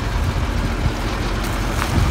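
Steady low rumble of farm machinery running, mixed with wind noise on the microphone.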